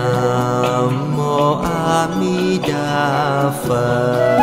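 Buddhist devotional music: a slow chant with long held notes that change pitch and waver at a few points, over a sustained accompaniment.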